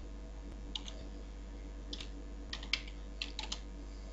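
Typing on a computer keyboard: irregular keystrokes in short runs, over a steady low hum.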